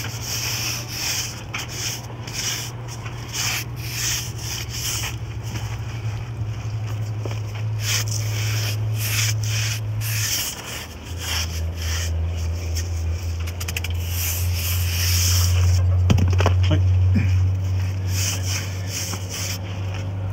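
Hand brush scrubbed back and forth over a brick wall with freshly raked mortar joints, sweeping off the leftover mortar dust in repeated rasping strokes. A steady low hum runs underneath and shifts slightly lower about halfway through.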